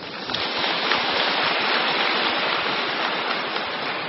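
A steady rushing hiss of noise with no voice in it, building over the first second and then holding even, a little softer toward the end.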